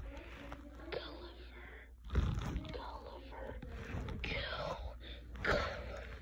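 Faint, indistinct speech, partly whispered, with a louder moment about two seconds in and again near the end, over a steady low hum.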